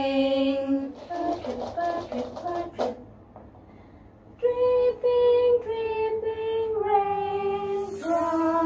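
Women's voices singing a slow, gentle song together: a held note, a few short sung syllables, a brief pause, then long held notes stepping down in pitch.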